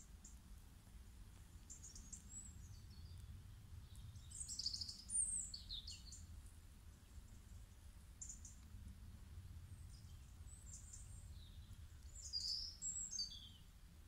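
Faint birdsong: scattered high chirps and short falling whistles, loudest about four to five seconds in and again near the end, over a low steady rumble.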